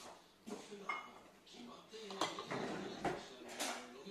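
Metal cutlery clinking against ceramic plates and dishes at a meal table: a few separate, sharp clinks.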